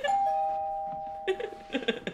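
Two-note doorbell chime, ding-dong: a higher note, then a lower one a moment later, both ringing on and fading away over about a second and a half.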